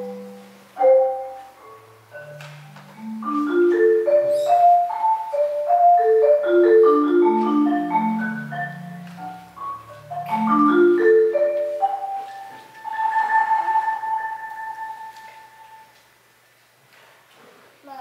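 Solo marimba played with four mallets in climbing runs and arpeggios that sweep from low notes up into the upper range. About thirteen seconds in, the playing settles on a rolled high note that is held for a few seconds and fades out.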